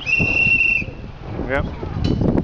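A single whistle blast, one steady high tone lasting just under a second, signalling that the run has gone over the time limit.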